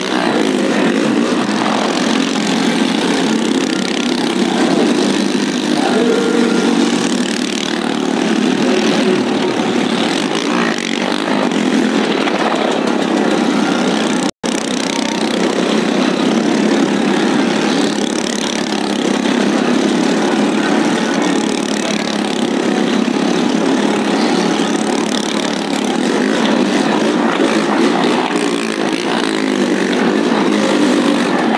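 Motorcycle engines running steadily at idle with small swells of revving, with a split-second dropout about halfway through.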